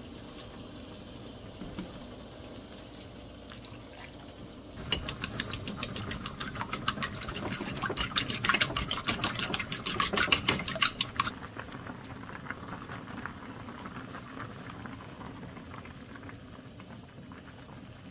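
A rapid run of short, even tapping strokes, about seven a second, starts about five seconds in and stops after roughly six seconds, over a steady low background.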